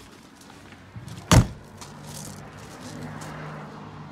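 A single loud bang a little over a second in, followed by a steady low engine hum from a running vehicle or machine.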